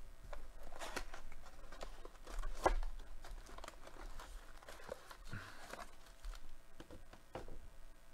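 Hands opening a sealed box of trading-card packs: wrapping crinkling and tearing, with cardboard and foil packs rustling in irregular scrapes and taps as they are pulled out.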